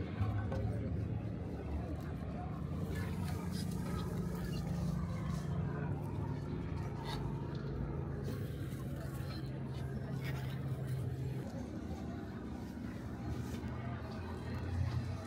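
Outdoor market ambience: faint background voices over a steady low hum that stops about eleven seconds in.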